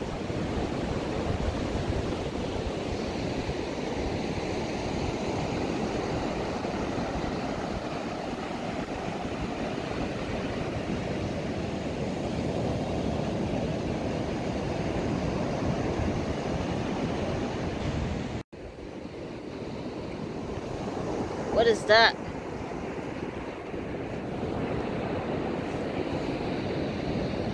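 Ocean surf breaking and washing up a sandy beach, a steady rushing that cuts out abruptly for a moment about two-thirds of the way through, then resumes.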